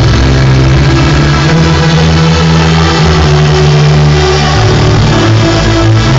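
Loud electronic dance music played live on a synthesizer keyboard, with a heavy sustained bass line that shifts note every second or two.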